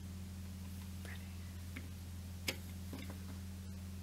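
Fingers with long nails handling a plastic blush palette compact: a few faint taps and ticks, and one sharp plastic click about halfway through. A steady low electrical hum from the camera's built-in microphone runs underneath.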